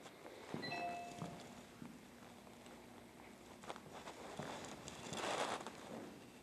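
Faint footsteps and shoe scuffs of a couple dancing on a wooden floor, with a brief faint tone about a second in.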